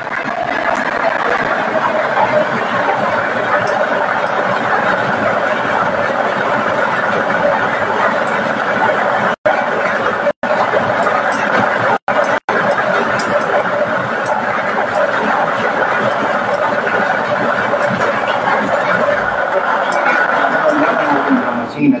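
Lottery draw machine running: its blower keeps the numbered balls tumbling inside the clear acrylic drum, a loud steady rushing noise. It cuts out briefly four times around the middle and stops abruptly at the end, when the machine shuts off with a ball drawn into the tube.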